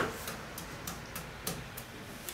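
Kitchen knife chopping an onion on a wooden cutting board: a run of light, quick taps about three a second as the blade meets the board.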